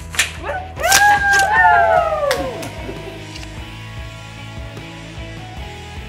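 Oversized ribbon-cutting scissors snipping through a ribbon in a few sharp clicks, with people whooping and cheering over them, over background music. After about two and a half seconds the cheering stops and the music carries on alone.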